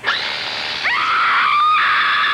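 Horror-trailer sound mix: a sudden noisy hit at the start, then from about a second in a long, high-pitched scream that holds to the end.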